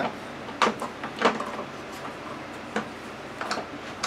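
Plastic featherboard being handled and shifted on a table saw top: a few light clicks and knocks, the loudest about half a second in and just past a second.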